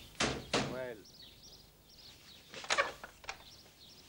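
A brief voiced cry in the first second, then a few thuds on a door about two and a half seconds in, followed by a single knock.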